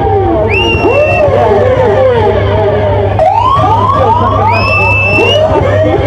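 Sound-system siren effects swooping up and down again and again, with a quick run of rising sweeps about halfway through and a couple of high held tones. Underneath runs the heavy, steady bass of a dub reggae record played loud on the sound system.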